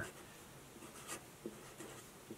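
Felt-tip marker writing on paper: a few faint, short scratchy strokes.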